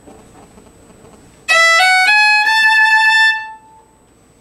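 Fiddle playing a short run of notes rising on the E string, starting about a second and a half in and climbing to a high A that is held for over a second before fading. These are the pickup notes leading to the tune's first downbeat on the high A.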